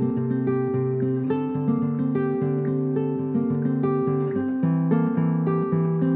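Acoustic guitar playing an instrumental cueca introduction: plucked notes over a stepping bass line at a steady pace, with no singing.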